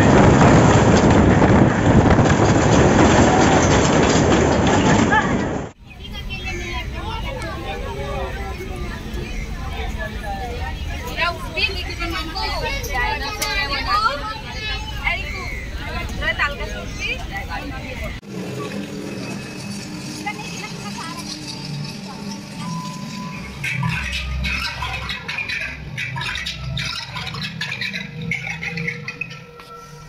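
Roller coaster ride: a loud, even rush of wind and track noise for about the first six seconds, cutting off abruptly. Then amusement-park crowd noise with voices and shrieks, and after another abrupt change at about eighteen seconds, music with a pulsing low beat under voices.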